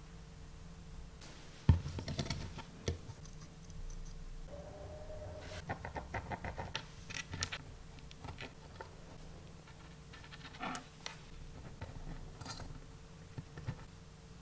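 Hands handling small circuit boards and wires on a table: scattered light clicks, taps and scratches in short clusters, with one sharper click a couple of seconds in.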